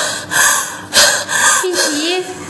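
A woman in labour panting hard, about four sharp, loud gasps in quick succession as she strains to push.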